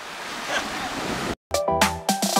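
Ocean surf breaking and washing onto the shore, a steady rush of foam, which cuts out abruptly a little over a second in; after a brief silence, background music with a beat and steady pitched notes begins.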